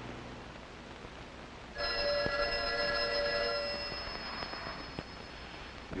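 Telephone bell ringing: one long ring, starting about two seconds in and lasting about four seconds, its lower tones dying away first.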